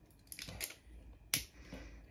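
A few faint small clicks and taps of small plastic objects being handled, with one sharper click about a second and a half in.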